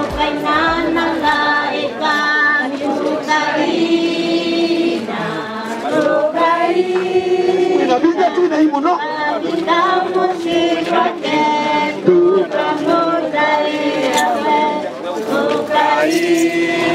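A choir of mixed voices singing a slow hymn-like song in long held notes, without instruments once a bass beat fades out in the first second or so.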